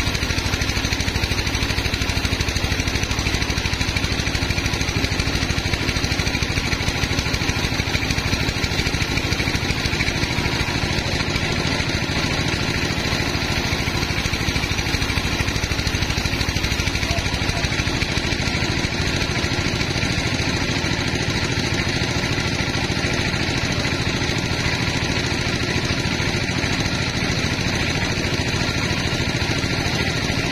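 Band sawmill running with a steady mechanical drone, its level even throughout.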